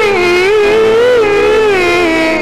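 Egyptian shaabi wedding music: a single loud held melody line that bends slowly up and down in pitch without a break.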